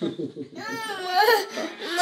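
A toddler's whiny cry: one long, high, wavering wail from about half a second in, lasting about a second.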